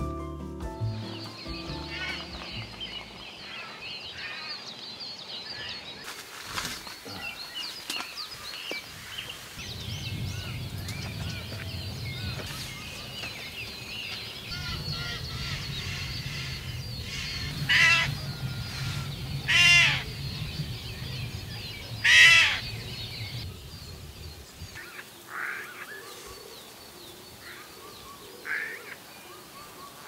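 Wild birds calling and singing in a dense evening chorus, with one bird giving three loud harsh calls about two seconds apart around two thirds of the way through. A low steady hum sits under the birds through the middle.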